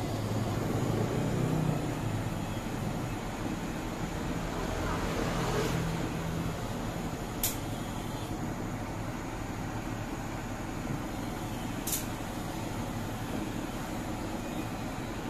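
A steady rushing hiss of workshop equipment, with a low hum that fades about halfway through. Two sharp clicks come a few seconds apart in the second half.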